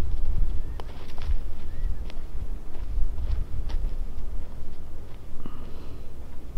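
Footsteps on dry dirt and brush, a scatter of short scuffs and snaps, over a steady low rumble of wind on the microphone.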